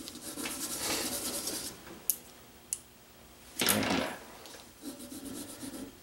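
Marker tip rubbing and scratching across drawing paper in rapid colouring strokes, with two sharp clicks around the middle and a short louder burst a little after halfway.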